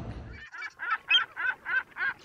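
Goose honking sound effect, a quick run of short honks about four a second, dubbed in over the audio in place of a man's words to censor them; the background sound drops out suddenly just before the honks begin.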